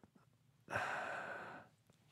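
A person sighing once: a breathy exhale of about a second that starts suddenly and tails off.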